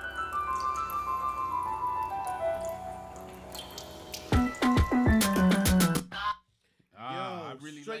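Electronic hip-hop beat blending in African rhythmic patterns, played back: a descending run of bright synth notes, then a few sharp drum hits with bass notes. The playback cuts off suddenly about six seconds in, and a man's voice starts shortly after.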